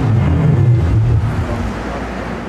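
A loud, steady low rumble that eases off slightly near the end.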